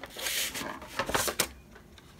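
Black cardstock being folded in half and handled, a short dry paper rustle, then a few light taps about a second in.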